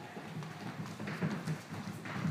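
Footsteps of several children walking across a wooden studio floor: an uneven run of quick knocks.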